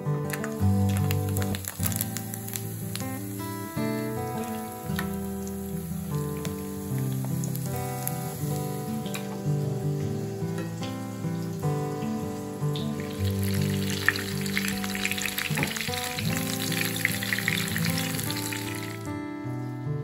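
Hot oil sizzling in a frying pan as a breaded chicken cutlet shallow-fries, with a few sharp pops in the first seconds and a loud, dense sizzle from about two-thirds of the way in that stops just before the end. Acoustic guitar background music plays throughout.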